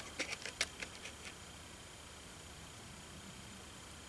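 Faint clicks and scrapes of multimeter probe tips against the solder lugs of a radio's loop antenna, several small ticks in the first second or so, then only faint room tone.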